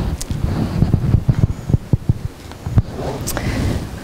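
Microphone handling noise: irregular low thumps and rustling, like a microphone rubbing against clothing, with no speech.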